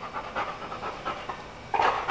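A dog panting steadily in quick, even breaths.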